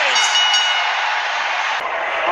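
Wrestling arena crowd cheering at the finish of a match, a dense steady noise with a few ringing high tones in the first half-second. It cuts off abruptly near the end.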